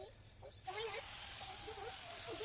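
Compressed-air spray gun spraying glue onto a foam sheet: a steady hiss that starts suddenly about two-thirds of a second in and keeps going.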